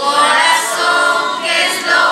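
Choir of several voices singing together, a new sung phrase beginning right at the start.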